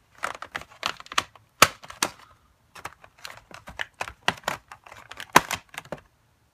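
Rapid run of sharp plastic clicks and rattles as marker barrels knock against each other and the box insert while one marker is picked out of its slot, with a brief pause about two seconds in.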